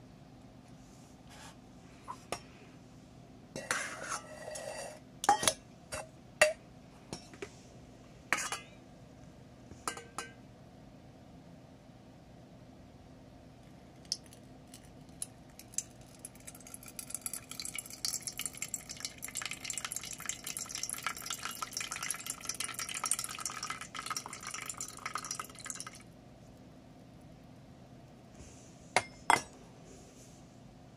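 Water poured from a stainless steel mug through a homemade aluminium-can spout into a stainless steel bowl, a steady splashing trickle lasting about ten seconds. Before it come scattered clinks and taps of the steel mug and the thin aluminium being handled, and two knocks come near the end.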